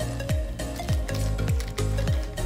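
Background music with a steady beat and deep bass notes that slide down in pitch.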